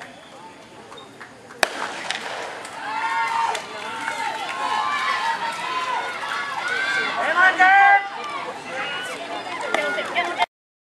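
A single starting-pistol shot about a second and a half in, then many spectators shouting and cheering for the sprinters, loudest about two seconds before the end.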